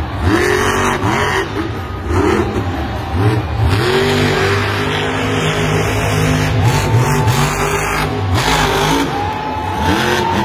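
Grave Digger monster truck's supercharged V8 revved hard and repeatedly, its pitch sweeping up and dropping back again and again as the truck powers across the dirt and into a jump.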